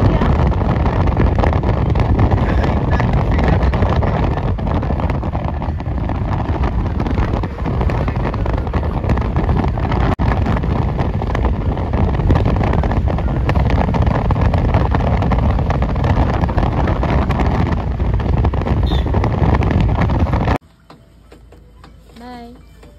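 Steady rush of wind buffeting a phone microphone over the road noise of a moving vehicle, heavy in the low end; it cuts off suddenly near the end.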